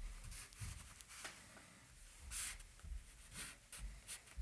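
Compressed charcoal stick scratching across newsprint in a series of short strokes, the longest and loudest a little past halfway, with soft low bumps of the hand on the paper.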